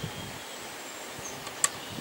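Steady outdoor background hiss with a single short click about one and a half seconds in.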